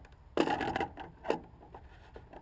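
Clinking and rattling of a single scull's hardware being handled by hand at the foot stretcher: a burst of small metallic clatter about half a second in, then one sharp knock a little after a second.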